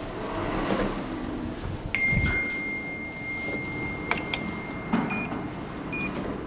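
Electronic tones from a Schindler lift's Miconic 10 fixtures: a steady high tone starts about two seconds in and holds for about two seconds. Then come a couple of clicks and short beeps near the end.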